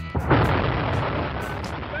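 Long March 2F rocket's engines and four strap-on boosters igniting at liftoff: a sudden loud rushing noise that starts a fraction of a second in and holds steady.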